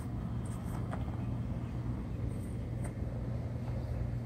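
Steady low motor hum, with a few faint clicks.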